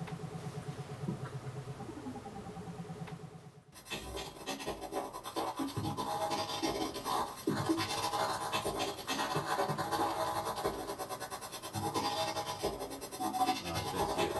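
Experimental synthesizer sounds: the OP-1 gives a buzzing, rapidly pulsing low drone with a higher tone that dips and rises. About four seconds in this cuts off abruptly and gives way to a dense, scratchy, crackling electronic noise texture.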